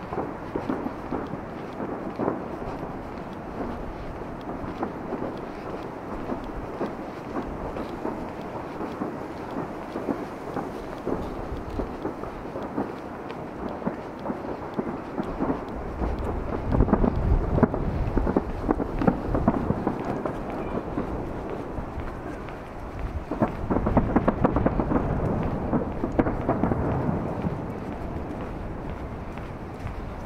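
Distant fireworks booming and rumbling with crackle. The rumble runs throughout and swells in two louder spells, one about halfway through and one near the end.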